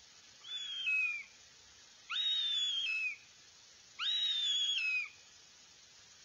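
Northern goshawk nestling giving three drawn-out, whistled begging calls, each about a second long. Each call holds a high note and then slurs down in pitch at the end, over faint steady hiss.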